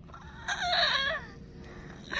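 A woman sobbing: one short, strained cry about half a second in, falling in pitch as it ends.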